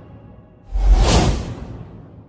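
A cinematic whoosh-and-boom transition hit that comes in suddenly less than a second in, with a deep booming low end, then dies away over about a second. Faint remnants of music sit underneath.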